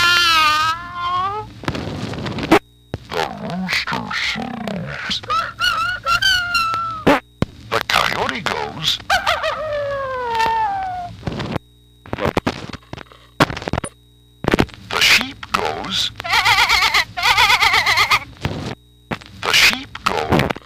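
A See 'n Say toy's plastic record played back on a turntable: a recorded cat's meow in the first second and a half, then more recorded animal calls and the toy's announcer voice, separated by short silent gaps.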